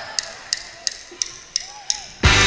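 A drummer counting in before a live rock song: sharp, evenly spaced ticks, about three a second, over a faint audience background.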